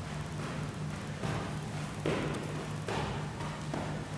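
Footfalls of a person skipping on artificial turf, one landing a little more often than once a second, over a steady low hum.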